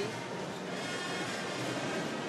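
Steady crowd noise of a basketball arena, with faint music underneath.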